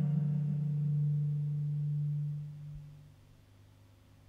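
The band's last note ringing out on guitars and bass at the end of a song, one low steady tone that fades away about three seconds in.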